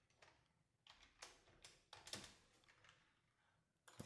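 Faint, irregular keystrokes on a computer keyboard, several sharp clicks over the first three seconds as code is typed.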